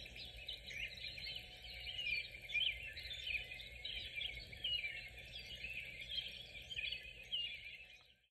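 Faint chirping of small birds: many short, overlapping calls at an irregular pace, cutting off suddenly at the end.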